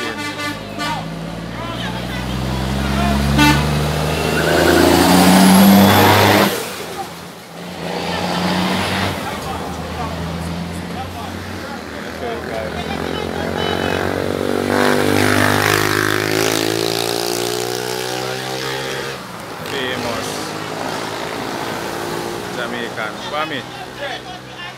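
Cars driving past close by on a road, engine notes swelling and fading as each goes by, loudest in the first six seconds, with people's voices underneath.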